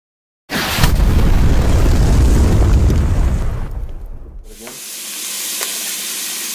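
A movie-style explosion sound effect: a sudden loud blast about half a second in, with a deep rumble that holds for about three seconds and then dies away. Near the end a steady sizzle of vegetables frying in a pot comes in.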